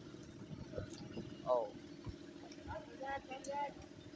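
A boat engine running steadily, a low even hum with a fine pulsing beat, under faint voices.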